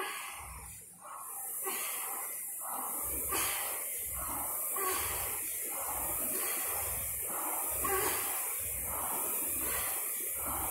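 Concept2 air rowing machine in use: its fan flywheel whirs in rhythmic surges with each stroke over a steady hiss that sets in about a second in, along with the rower's rhythmic breathing.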